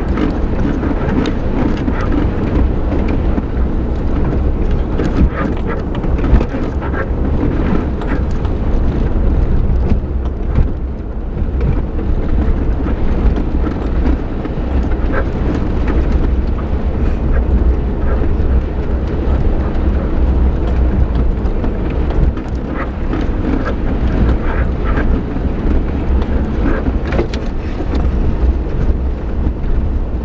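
Suzuki Jimny driving slowly along a rutted, muddy dirt track, heard from inside the cab: a steady low engine and tyre rumble with frequent knocks and rattles as the body and suspension take the bumps.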